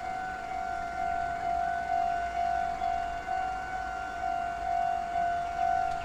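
Japanese railway level-crossing alarm sounding its repeating high electronic tone, the warning that the gates are down and a train is approaching.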